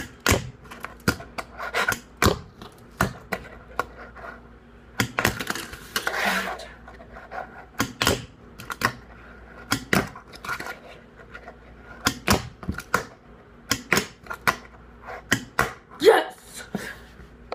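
Fingerboard being popped, flicked and landing on a tabletop in repeated laser flip attempts: irregular sharp clacks, often several a second in quick clusters.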